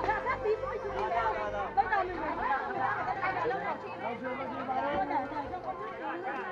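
Chatter of several people talking at once, voices overlapping, with faint background music underneath.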